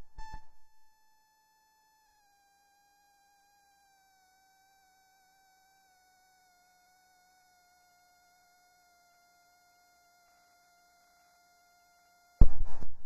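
Near silence with a faint, thin whine that slowly drifts down in pitch.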